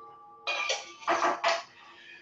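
Stainless steel mixing bowl ringing and clanking as it is handled and set down on the counter, with a few short metallic clinks.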